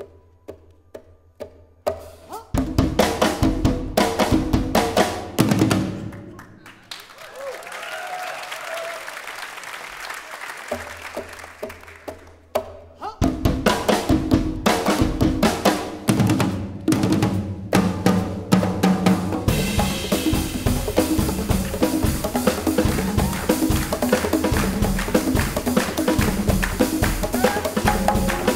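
Live percussion trio of drum kit, congas and a row of tall goblet-shaped hand drums. A few sparse hits give way to a burst of fast drumming, then a quieter stretch. From about halfway all the drums play loud and dense, with cymbals brighter near the end.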